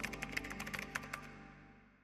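A quick run of typing key clicks, typewriter-style, over the first second or so, on top of soft background music that fades out.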